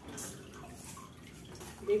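Faint rustling and crumbling of dry potting soil and roots as a Monstera root ball is pulled apart by hand, with a brief scratchy rustle just after the start.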